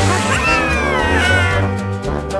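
Cartoon background music with a high-pitched, squealing character voice that slides steadily down in pitch over about a second and a half.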